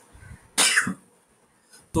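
A single short cough about half a second in.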